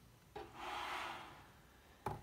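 Hands turning and smoothing down a cardboard page of a board book: a small tap, then a soft rubbing swish lasting about a second.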